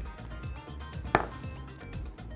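A single sharp clink of glassware about a second in, as a small glass prep bowl is handled over the glass mixing bowl, with faint background music underneath.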